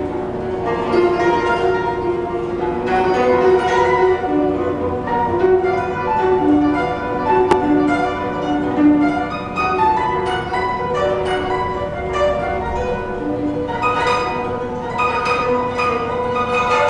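Guzheng (Chinese zither) played solo: a continuous stream of plucked notes that ring on over one another as the melody moves.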